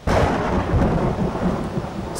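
A thunderclap breaking suddenly, then rumbling on loudly.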